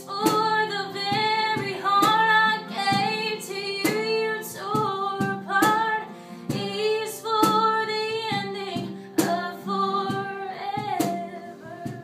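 A woman singing a country song live, accompanying herself on a strummed acoustic guitar, with sharp percussive beats from a cajon keeping time.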